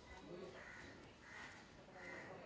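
Faint crows cawing, a few short calls about a second apart, over near-silent room tone.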